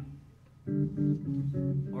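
Electric bass playing a quick run of short plucked notes, starting just over half a second in after a brief lull.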